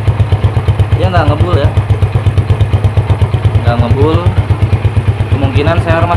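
Yamaha Jupiter Z's single-cylinder four-stroke engine idling, heard at the tailpipe as a steady run of even exhaust pulses. The owner judges the exhaust fine.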